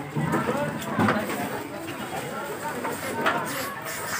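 Indistinct voices of several onlookers talking and calling out, without clear words.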